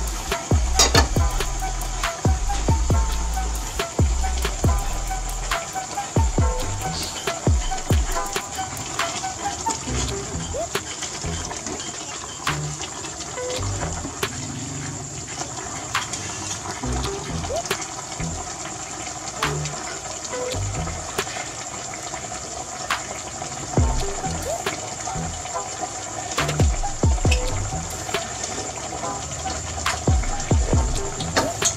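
Soup bubbling in an aluminium stockpot on a gas burner, with a metal ladle stirring and knocking against the pot in scattered clicks. A steady high hiss runs underneath.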